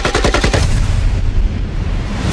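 Automatic rifle fire, a rapid burst of shots, giving way about half a second in to a loud, sustained low rumble.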